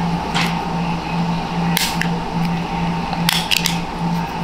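A few sharp plastic clicks and taps, with a quick cluster near the end, as Oakley Sutro sunglasses are handled and the frame is flexed to work the lens out. Under them runs a steady low hum that throbs about twice a second.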